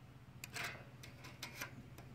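A few light clicks and scrapes as a steel tape measure is handled against a bare sheet-metal panel, in a cluster about half a second in and again around a second and a half, over a faint steady low hum.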